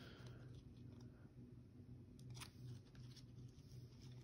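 Near silence: room tone with a faint steady low hum and a couple of faint soft clicks a little past two seconds in.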